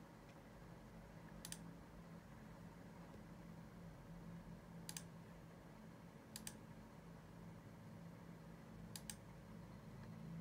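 A few faint, sharp clicks from operating a laptop, some in quick pairs like double-clicks, over a low steady hum in near silence.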